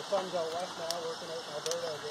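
A person's voice talking indistinctly, with a couple of light clicks about halfway through and near the end.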